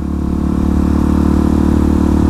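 Motorcycle engine running at a steady, even pace while the bike cruises along the road, heard from on board.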